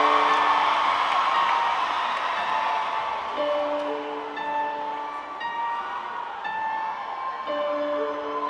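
Nord Stage keyboard playing a slow figure of held notes, the phrase starting again about every four seconds. Audience crowd noise underneath fades over the first few seconds.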